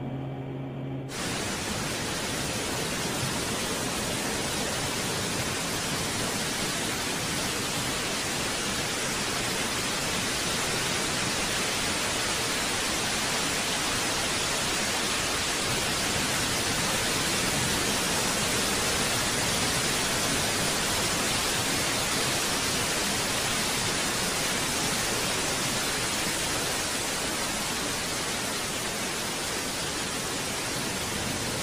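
Steady, even static noise, a hiss across all pitches, cutting in sharply about a second in as a low hum with a few steady tones stops.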